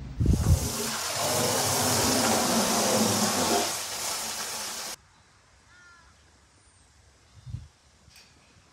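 A horse blowing air hard through its nostrils right at the microphone: a loud rushing breath that lasts about five seconds and cuts off suddenly. Afterwards a few faint bird chirps.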